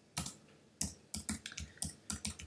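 Computer keyboard keystrokes: one click, a short pause, then a quick irregular run of clicks as an IP address and subnet mask are typed.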